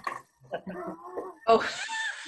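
People laughing over a video-call connection, short broken laughs and then a breathy 'Oh' about a second and a half in.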